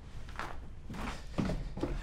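A few soft footsteps across a room.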